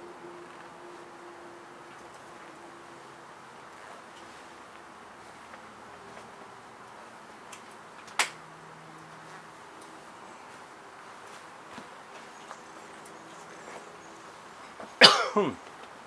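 Honey bees buzzing faintly around the hives, with one sharp click about eight seconds in and a man coughing near the end.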